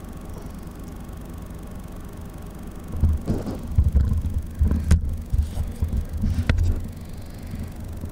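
Microphone handling noise: from about three seconds in, heavy irregular low thumps and rubbing with a few sharp clicks as the camera is moved about. Before that there is a steady low rumble.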